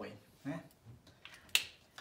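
A single sharp click about one and a half seconds in, after a short spoken syllable.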